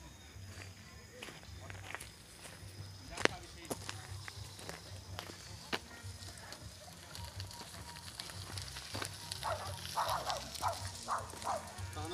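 Low steady rumble with a few sharp clicks, and from about nine seconds in, faint voices in the distance.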